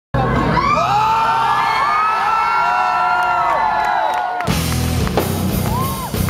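Concert crowd cheering and whooping, then about four and a half seconds in the rock band comes in loudly with drums, bass and guitars.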